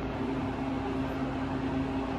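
Steady hum inside a ThyssenKrupp hydraulic elevator car, with a constant low tone, as the car comes down to the ground floor.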